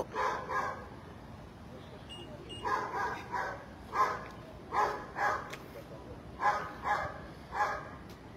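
A dog barking, short barks mostly in pairs, starting a couple of seconds in and repeating for the rest of the stretch.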